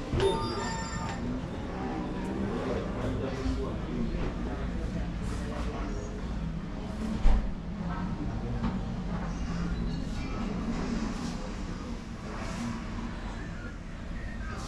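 Barber shop background of indistinct voices and music, with a brief ringing tone in the first second and a single low thump about seven seconds in.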